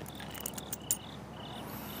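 Crickets chirping, short high chirps repeating a few times a second, with a few light clicks a little under a second in.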